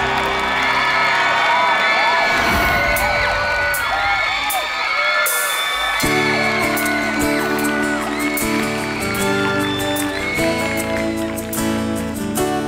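Music with an audience cheering and whooping over it. About six seconds in, a new instrumental intro starts with steady sustained low chords, leading into the song.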